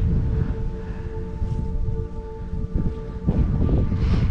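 Wind buffeting the microphone, a heavy low rumble that rises and falls, over a faint steady held tone.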